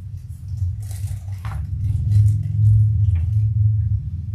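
Handling noise at the reading table as a Torah scroll is worked: a low rumble that grows louder about halfway through, with a few light rustles and taps.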